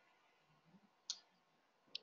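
Near silence: quiet room tone, broken by a short faint click about a second in and another just before the end.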